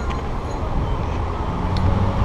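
Car driving slowly along a town street: a steady low engine rumble with road and traffic noise.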